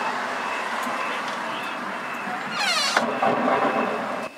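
Spooky Halloween sound effects: a steady hissing haze, and about two and a half seconds in, a shrill screech that falls steeply in pitch.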